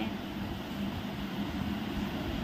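Steady background noise with a faint low hum and no distinct knocks or clicks.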